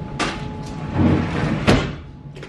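Tabletop handling noise while eating: a click, then about a second of rustling that ends in a sharp knock, over a faint steady tone.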